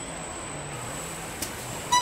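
Car-assembly-line factory noise: a steady machinery hum with a constant high whine and a faint click, ending in a short, loud electronic beep.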